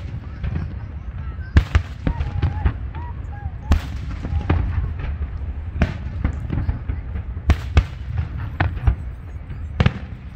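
Aerial fireworks shells bursting in a string of sharp booms, about six loud ones spread through, with many smaller pops and crackles between them.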